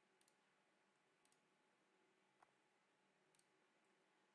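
Near silence, with one faint mouse click about two and a half seconds in.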